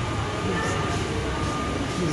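Steady indoor background noise: a low rumble with a faint steady high tone running through it.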